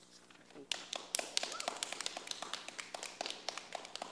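A few people clapping in scattered, uneven claps, several a second, starting just under a second in.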